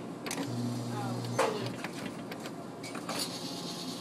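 Claw machine motor humming steadily for about a second as the claw is moved into position, over the background noise of the store.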